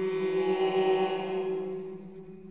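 A vocal sextet (soprano, mezzo, alto, tenor, baritone, bass) and a viola hold a long, still chord. It swells up and fades away within about two seconds, the voices closing from an open 'o' vowel toward a hummed 'm' or 'n'.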